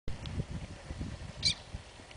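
A single short, high-pitched bird call about one and a half seconds in, over low, uneven rumbling background noise.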